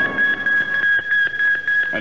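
A steady high-pitched tone held on from the radio news theme as it ends, heard on an old broadcast recording.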